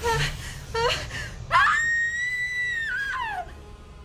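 A young woman's voice: two short cries, then about a second and a half in a long, very high-pitched wail held for nearly two seconds that falls away at the end, as a spell takes hold of her.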